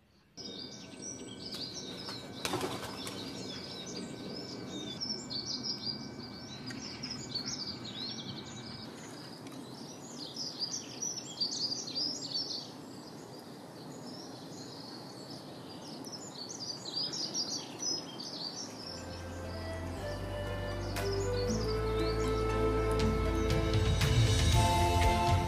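Small songbirds chirping and singing, a busy chorus of many short calls. In the last few seconds music fades in and grows louder.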